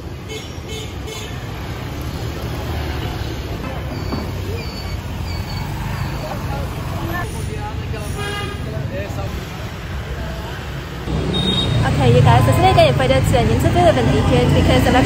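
City street traffic: a steady rumble of passing motorbikes and cars, with four short high beeps in a row about a third of the way in. Near the end it gets louder, with voices close by.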